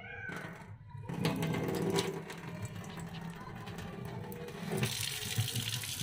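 Kitchen tap turned on, water running into a stainless steel sink, starting about a second in and running steadily.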